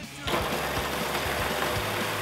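Food processor motor starting about a quarter of a second in and running steadily, its blade puréeing strawberries with sugar and lemon juice into a coulis.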